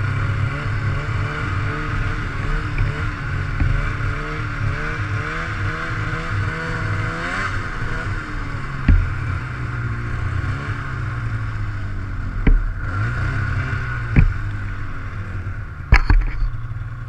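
Snowmobile engine running at low speed, its pitch wavering up and down with the throttle through the first half. A few sharp knocks come in the second half, about a second and a half apart near the end.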